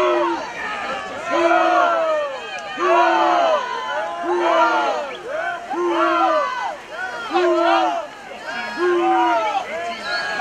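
Spectators yelling cheers in a repeated rhythm, about one loud shout every second and a quarter, with several voices overlapping each time.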